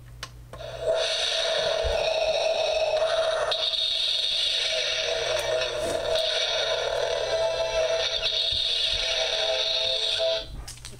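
A Star Wars Darth Vader alarm clock radio's small built-in speaker starts sounding about a second in, right as its buttons are pressed: a steady, tinny sound with no bass.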